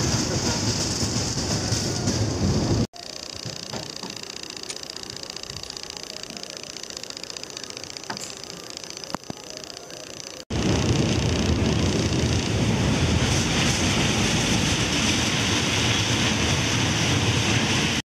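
Steady rushing, rumbling noise of a small amusement-park train ride running on its elevated track, heavy with wind on the microphone. About three seconds in it cuts to a much quieter stretch with a few faint clicks, then the loud rushing noise returns for the last seven seconds.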